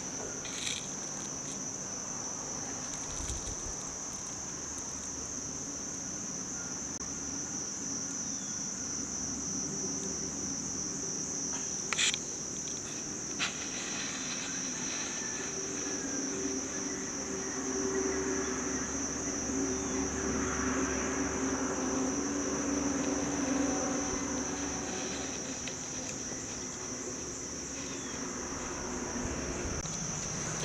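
Steady, high-pitched insect drone running throughout, with a couple of short faint clicks about twelve seconds in.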